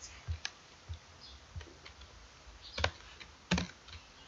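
Computer keyboard typing: a few scattered single keystrokes, light clicks in the first couple of seconds and two louder ones near the end.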